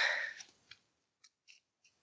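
A short breathy exhale into a podcast microphone that fades within half a second, followed by three or four faint, soft clicks spread across the rest of the gap.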